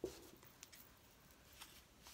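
Near silence, with a soft knock at the very start and a few faint ticks: a deck of oracle cards being picked up off a cloth-covered table and handled.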